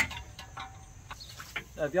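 A sharp metal clack of a breaker bar and socket on the crank bolt, followed by a few light tool clicks. A steady high insect drone sounds behind it.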